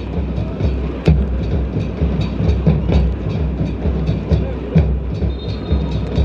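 Stadium background sound: a steady drum beat, about two beats a second, over a low rumble.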